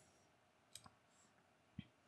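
Near silence with faint computer mouse clicks: a quick double click a bit before the middle, then one more click near the end, as drawing tools are selected.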